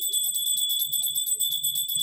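Puja hand bell rung continuously: a steady, high ringing beaten into rapid, even strikes, as during worship before an idol.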